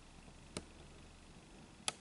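Two short, sharp clicks over quiet room hiss, one about half a second in and a louder one near the end.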